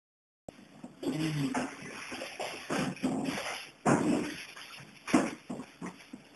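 Muffled hums and mouth noises from a man chewing a hot sandwich, broken by a few sharp knocks and rustles; the sound cuts in after about half a second of dead silence.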